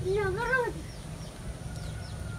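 A child's short, wordless, high-pitched cry that wavers up and down and stops under a second in, over a steady low rumble.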